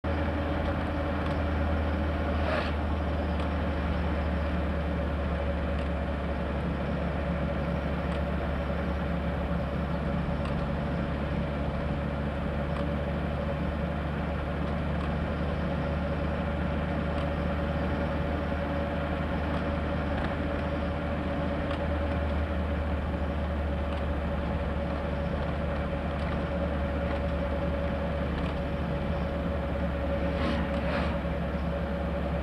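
A steady low rumble with a constant hum on one pitch, unchanging throughout, like a running engine or machine, with a faint click about two and a half seconds in.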